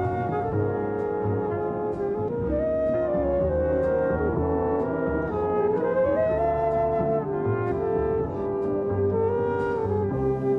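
Jazz big band playing a flute over brass chords and a walking bass. The lead melody slides smoothly up in pitch twice and eases back down between the slides.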